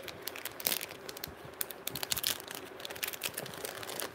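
Plastic packets crinkling as they are handled, a run of irregular small crackles and clicks.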